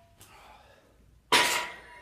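A 20 kg tri-grip weight plate slid onto a barbell sleeve, clanking once against the plates already loaded, with a short metallic ring that fades over about half a second.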